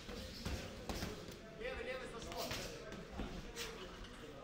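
Boxing gloves landing with dull thuds in a close-range sparring exchange, a handful of punches spread through the moment, with voices in the background.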